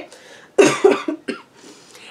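A woman's soft, breathy chuckle: two or three short puffs of breath, starting about half a second in.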